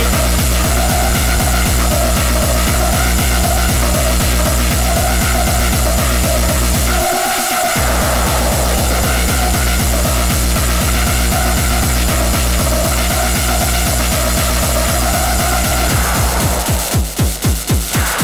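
Early hardcore dance track from a DJ mix: a fast, steady kick drum under a wavering synth line. The kick drops out for under a second about seven seconds in, and near the end it turns into a quicker roll.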